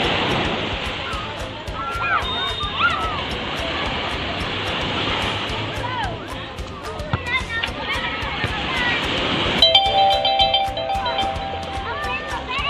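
Small waves breaking and washing up a sandy beach, with a steady rush of surf and wind on the microphone and the far-off voices of people in the water. About two seconds before the end, music with steady held notes comes in.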